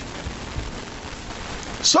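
Steady hiss-like noise with a few soft low thumps in the first second, then a man's voice starts just before the end.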